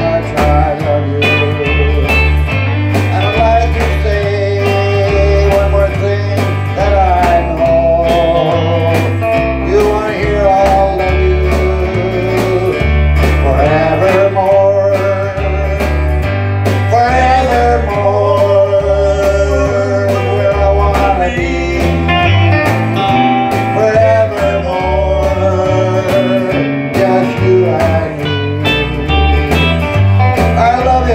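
A small country band playing live: electric lead guitar over a strummed acoustic rhythm guitar, with an electric bass playing a steady, repeating line underneath.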